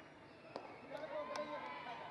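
Cricket bat striking the ball: a single sharp knock about half a second in, with a second, lighter click under a second later, and voices talking around it.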